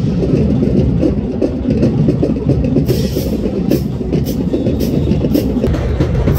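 Marching band drums and brass playing in the stadium stands, heavy at the low end, with cymbal crashes about every half second in the second half.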